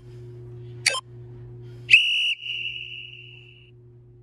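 A short click, then a single steady high-pitched tone that sounds loud for about half a second and then fades away over about a second.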